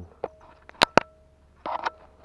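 A few sharp clicks and knocks, the two loudest close together about a second in, then a short burst of scuffing near the end, as a hooked fish is handled and landed.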